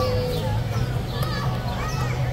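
Several people's voices chattering over one another, over a steady low hum.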